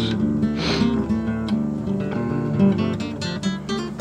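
Background music: acoustic guitar strumming with held notes.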